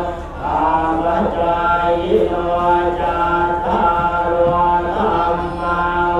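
Buddhist monks chanting together, led by a voice into a microphone, on long held notes with short breaks between phrases.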